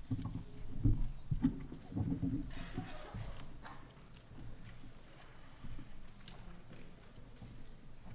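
A run of low knocks and thumps from objects being handled near the stage microphones, then a short rustle about three seconds in, like paper being handled, before the room settles to a faint hum with small scattered clicks.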